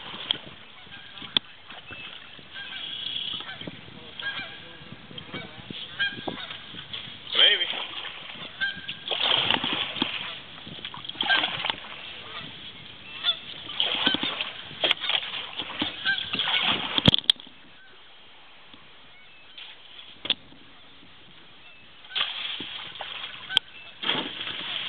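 Birds calling: a series of loud calls repeated every second or two, stopping about 17 seconds in.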